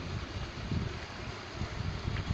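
Wind buffeting the phone's microphone outdoors: an uneven low rumble over a steady background hiss.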